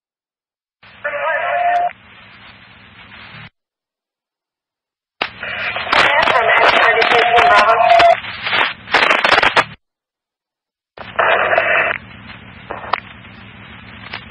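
Emergency-services scanner radio: three short transmissions, each cut off abruptly by the squelch into dead silence. The first and last open with a steady tone about a second long followed by static and hum, and the middle one is a loud, garbled burst with a held tone in it.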